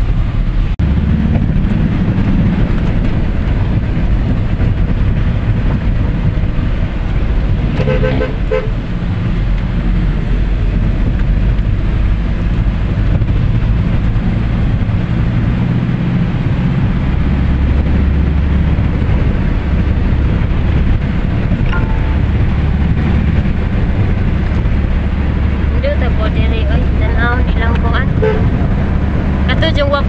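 Engine and road noise heard from inside a moving vehicle's cabin: a steady low drone that grows heavier about halfway through.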